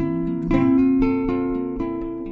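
Solo acoustic guitar picked between vocal lines, a new note or chord tone sounding about every half second over ringing strings.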